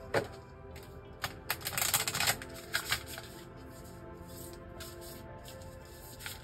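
A deck of oracle cards being shuffled by hand: a run of quick clicks and riffles, densest in the first three seconds, over soft background music.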